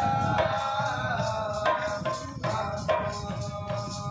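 Live folk-theatre song: a voice singing held, gliding notes over a steady percussion beat.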